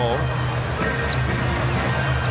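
Basketball game sound from the arena: a ball being dribbled on the hardwood court over steady crowd noise and music in the background.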